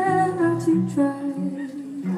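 Live music: a woman singing long held notes over acoustic guitar and band accompaniment.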